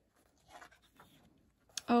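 Paper pages of a large printed guidebook being handled and turned: a soft rustle about half a second in and another around one second.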